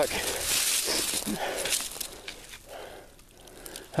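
Footsteps and rustling through dry sagebrush and brush on a steep hillside, with crunchy, crackly handling noise, growing quieter in the second half.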